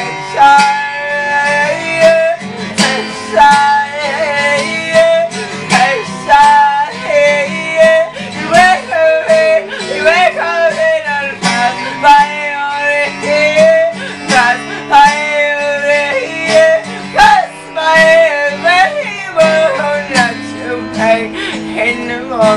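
Acoustic guitar strummed in a steady rhythm, with a voice singing a slow melody over it.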